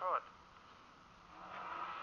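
Faint street noise with no distinct tones, rising about two-thirds of the way through, after a man's brief word at the start.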